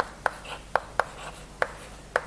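Chalk on a chalkboard while writing: a string of short, sharp, irregular taps, about six in two seconds, with faint scraping between them.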